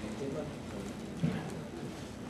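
Faint, indistinct voice under steady room hiss, with soft knocks that could come from handling things at a lectern.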